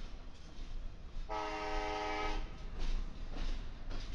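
A train's air horn sounds one multi-tone chord blast of about a second, over the low rumble of a passing double-stack intermodal train, whose wheels click over the rail joints near the end.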